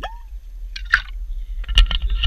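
Liquor glugging in a large handle bottle as a man drinks from it, with a short pitched glug at the start. This is followed by knocks and rustling as the bottle is handled, over a low rumble.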